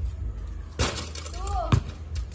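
Basketball play: a short crash about a second in, then a sharp, hard bounce of the ball near the end.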